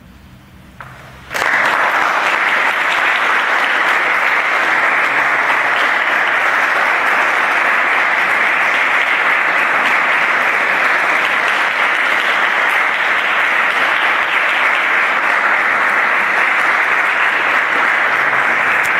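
Audience applause breaking out suddenly about a second in, after a brief hush, then going on steadily.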